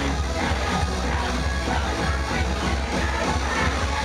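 Upbeat electronic J-pop idol song played loud over a small club's PA system, with a heavy, steady bass line and a driving dance beat.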